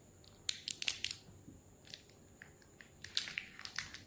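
Faint crackling and crinkling of a small plastic wrapper being handled, likely while opening a compressed magic-towel tablet, in two short spells about half a second in and again near the end.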